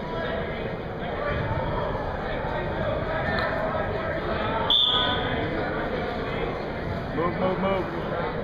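Spectators chattering in a gymnasium, and about halfway through one short blast of a referee's whistle, starting the wrestling from the referee's position.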